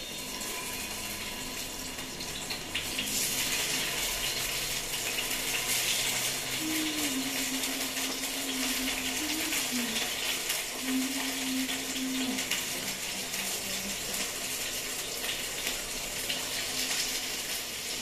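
Brinjal slices coated in salt and turmeric sizzling in hot oil in a kadai, a steady hiss that comes up about three seconds in and keeps going.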